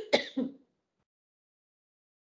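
A person clearing their throat: a few short, harsh bursts that stop about half a second in.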